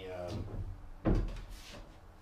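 A single sharp knock about a second in, heard under a man's halting speech.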